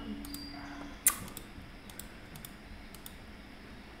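Computer mouse clicks: one sharp click about a second in, then a few faint clicks, over quiet room tone.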